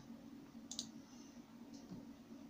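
Computer mouse button clicking: one sharp click about a third of the way in and a fainter one near the end, over a faint steady low hum.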